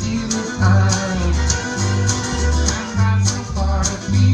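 Live country string band playing: fiddle, strummed acoustic guitar and upright bass, the bass sounding a steady two-beat line of low notes about twice a second.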